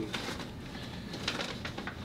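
Faint rustling and crinkling of a fast-food paper bag being handled, in a few brief scattered crackles.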